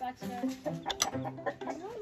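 Chickens clucking in a coop, with a short sharp call about a second in, over steady background music.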